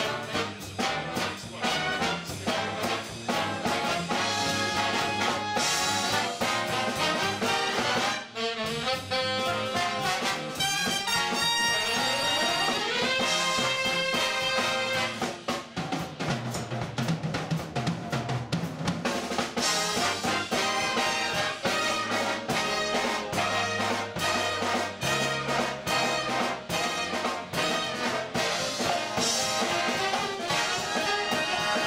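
Live jazz big band playing a swing arrangement: saxophone, trombone and trumpet sections over a drum kit. About twelve seconds in, the horns slide up in a rising glide before the full band comes back in.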